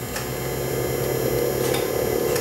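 Steady mid-pitched hum of cardiac cath-lab equipment running during the contrast injection and X-ray filming of the left ventricle. It starts just as the injection begins, over a low background hum.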